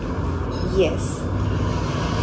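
A woman's short spoken 'yes' over a steady low background rumble.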